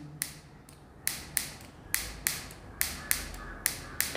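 Whiteboard marker and its plastic cap handled in the fingers, giving a string of sharp, irregular clicks, roughly three a second.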